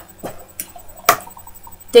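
A few light clicks and knocks as a plastic DVD case is picked up and handled, the loudest about a second in.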